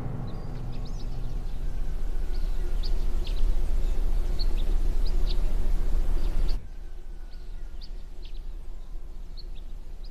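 Small birds chirping now and then over a low, steady outdoor rumble. The rumble cuts off abruptly about two-thirds of the way through, leaving the chirps over a quieter background.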